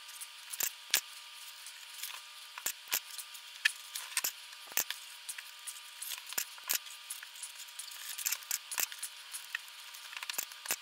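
Handling noise of stretchy self-fusing plastic tape being stretched and wrapped around a power cord's wires: irregular crackles and sharp clicks, a few of them louder, scattered throughout.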